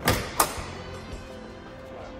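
Factory Five GTM driver's door being unlatched and swung open: a sharp click as the latch releases, then a second click about half a second later. Background music plays underneath.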